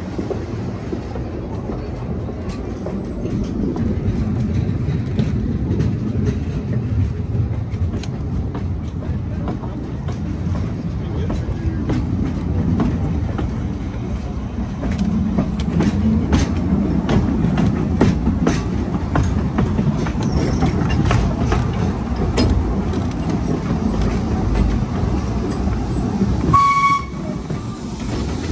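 Narrow-gauge passenger carriage running along, wheels rumbling steadily with a clickety-clack of clicks over rail joints and pointwork, thickest in the middle stretch. About a second before the end comes one short, clear whistle toot, and the running noise drops away after it.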